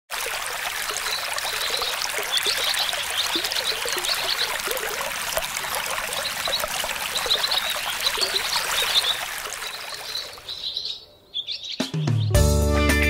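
Running stream water with small birds chirping over it, fading out near the end.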